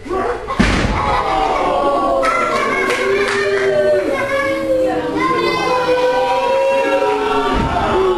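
A wrestler slammed onto the boards of a wrestling ring with a heavy thud about half a second in, then a crowd shouting and chanting, with another thud near the end.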